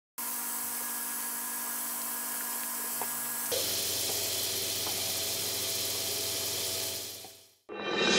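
Butter sizzling in a hot cast-iron pan: a steady hiss with a faint hum underneath. It gets a little louder about three and a half seconds in and fades out near the end.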